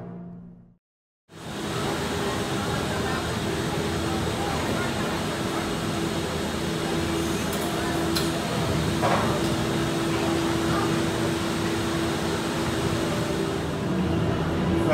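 Steady mechanical hum of a Disney Skyliner gondola station as the cabins move through it, with one held low tone and a few faint clicks near the middle. It starts suddenly about a second in.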